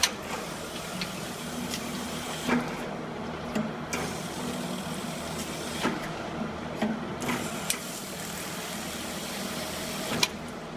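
Projectile tube-cleaning gun firing cleaning projectiles through condenser tubes: about eight short sharp pops at uneven intervals of about half a second to two seconds, over a steady machinery hum.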